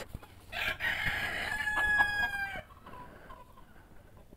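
A rooster crowing once: a single call lasting about two seconds, starting about half a second in.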